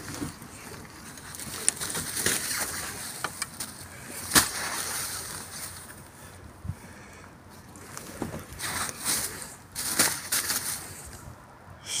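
Clear plastic bin bags crinkling and clothes rustling as gloved hands rummage through a dumpster, with scattered sharp clicks and knocks, the loudest about four seconds in.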